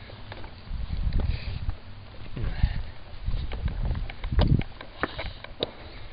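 Handling noise and low wind rumble on a handheld camera's microphone, with scattered clicks and a louder thump about four and a half seconds in.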